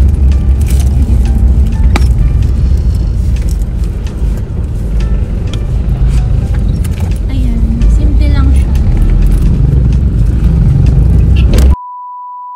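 Low rumble inside a car's cabin, with scattered clicks and rustles of a wallet and its zipper being handled close to the microphone. Near the end the sound cuts out to a single steady beep tone.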